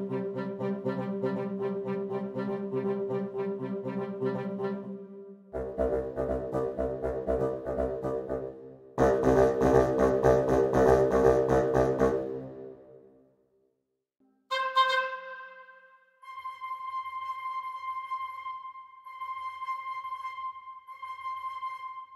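Kirk Hunter Studios' Kinetic Woodwinds sample library playing a rhythmic woodwind ostinato of fast repeated short notes. Lower parts join about five seconds in and the whole section swells about nine seconds in, then fades out. From about fourteen seconds in, a thinner, higher pattern of longer held notes follows.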